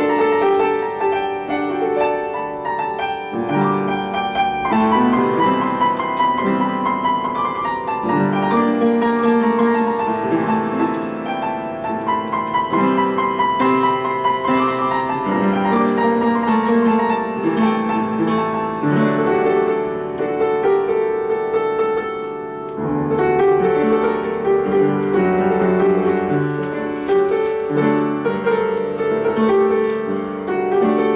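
Upright piano playing a Turkish folk tune (türkü) arranged for solo piano, a continuous melody over chords, briefly softer about three-quarters of the way through.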